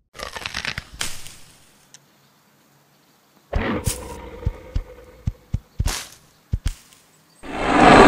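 Sharp, irregular cracking snaps, with a brief crackle just after the start and a silent gap before the main run of cracks begins about three and a half seconds in. Near the end a CGI dinosaur's roar rises in loudness.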